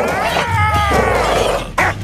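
Cartoon bulldog growling and snarling in a continuous vocal growl that bends in pitch, ending in a short bark near the end.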